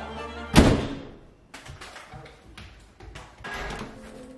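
A door slammed shut about half a second in: one loud thud with a short ringing tail, followed by a few faint taps, over background music.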